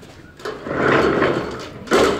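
Pull-down projection screen being drawn down: its roller runs with a steady rattling hiss for about a second, then a sharp click near the end as it latches.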